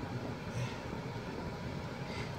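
Steady, quiet background hum with no distinct events, of the kind heard inside a car with the ignition on.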